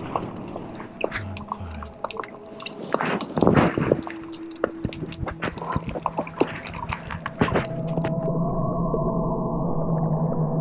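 Underwater water sound, swirling and bubbling, with many scattered clicks and crackles. Near the end it gives way to a low, steady drone with long held tones.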